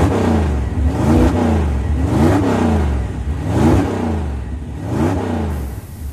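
An engine revving up and dropping back again and again, about once every second and a quarter, over a steady low rumble. The revving dies away near the end.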